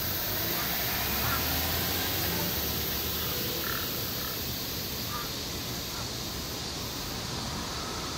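A crow giving a few faint, short, soft calls spread over several seconds, heard over a steady background hiss.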